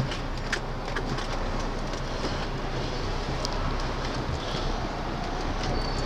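Diesel engine of an articulated lorry heard from inside the cab, a steady low rumble as the truck creeps forward at low speed.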